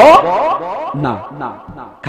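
A man's emphatic voice: a loud rising exclamation at the start, then shorter pitched syllables that get quieter and fade away near the end.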